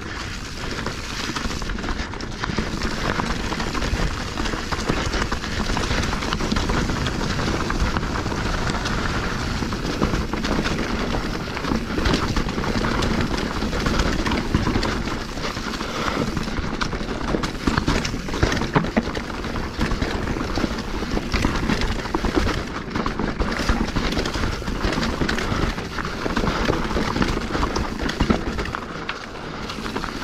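Specialized Stumpjumper Evo Alloy mountain bike descending rocky, leaf-covered singletrack at speed: continuous tyre rumble and crunch over leaves and stones, with a steady run of small knocks and rattles from the bike over the rough ground.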